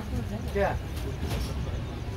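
Steady low rumble of an LHB passenger coach rolling along the track at speed, with a couple of sharp wheel-on-rail clicks.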